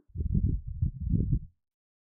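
A low, muffled voice murmuring without clear words for about a second and a half.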